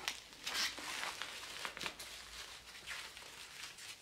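Plastic bubble wrap crinkling as a bubble-wrapped package is handled, in an irregular series of short rustles and crackles.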